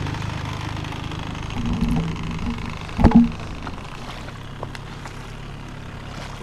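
Small outboard motor idling with a steady low hum that weakens after about four seconds, and a single knock about three seconds in.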